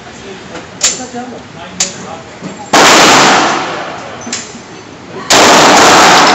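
Two 9mm shots from a Glock 17 pistol at an indoor range, about two and a half seconds apart, each a sudden loud bang that rings away over a couple of seconds. Two much fainter sharp cracks come earlier, in the first two seconds.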